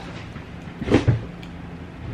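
A cotton T-shirt handled and lowered, with a brief rustle and soft knock about a second in, over a steady low room hum.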